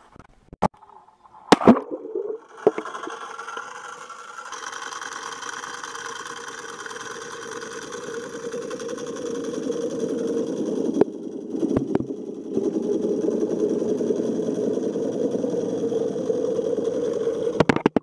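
Muffled underwater sound picked up by a waterproof action camera submerged in a swimming pool: a steady hum, after a few sharp knocks in the first two seconds. It gets louder partway through and cuts off suddenly near the end.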